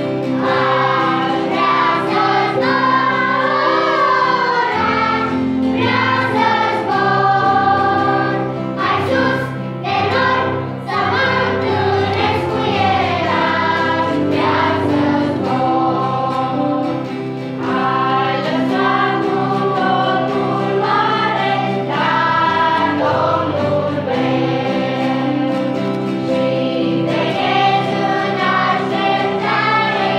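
Children's choir singing a Romanian Christian hymn, accompanied by guitar and piano. The song carries on without a break, with the voices over sustained low notes.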